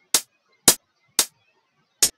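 Closed hi-hat samples previewed one after another in LMMS's sample browser: three short, crisp hi-hat hits about half a second apart.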